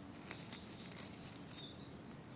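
Faint rustling of grass and a couple of soft clicks as a hand picks a young russula mushroom out of the ground.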